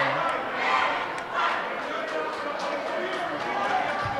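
Crowd chatter in a high school gymnasium: many spectators and players talking and calling out at once, with no single voice standing out.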